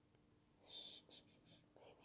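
Very quiet, close-up breathy whisper sounds from a woman: a soft breathy hiss about three-quarters of a second in, then a few fainter short breaths or mouth sounds.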